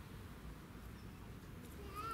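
Low, steady outdoor background rumble, with a short high-pitched call near the end.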